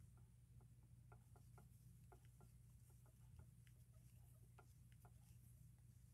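Near silence: faint, irregular small ticks and soft rubbing of a crochet hook working yarn, a few ticks a second, over a low steady hum.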